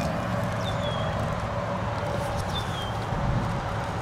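Steady outdoor background noise with a small bird giving two short, falling high-pitched chirps, one early and one about two and a half seconds in.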